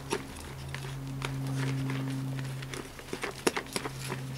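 Scattered scraping clicks and rustles of a small hand trowel working homemade compost and soil, with a quick run of sharper clicks near the end. Under them runs a steady low hum that swells and fades.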